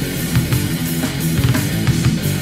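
Instrumental passage of a groove metal demo recording: a distorted electric guitar riff over a drum kit, with drum hits every few tenths of a second.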